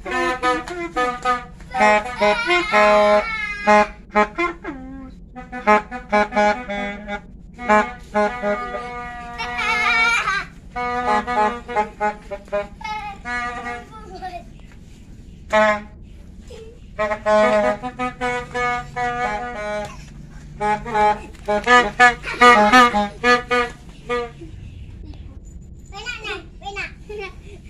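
Children's plastic toy trumpets blown in many short, reedy blasts, some held briefly and some wavering in pitch, with a few short pauses between turns.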